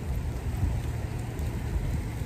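Wind buffeting the microphone: a steady, gusty low rumble.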